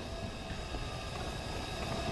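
Steady background noise, a low rumble under a hiss with faint steady tones, with no speech.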